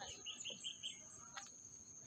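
Faint outdoor quiet in which a bird gives a quick run of five short, high chirps in the first second, followed by a faint click a little past the middle.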